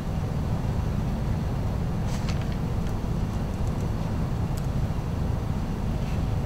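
Steady low rumble of room air conditioning, with a couple of faint brief rustles about two seconds in and again near five seconds.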